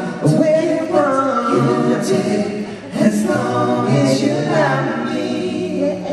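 Male pop vocal group singing a cappella in close harmony through stage microphones, several voices holding chords together. One phrase ends about three seconds in and the next starts straight after.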